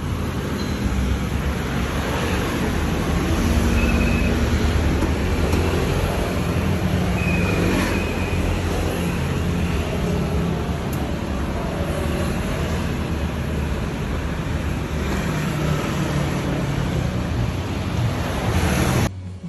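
Steady road traffic noise with a low rumble of engines and tyres.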